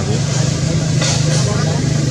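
A steady, low engine-like hum runs throughout under a constant background hiss.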